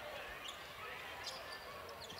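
A basketball being dribbled on a hardwood court, heard faintly with a few scattered sharp clicks over the low hum of a large arena.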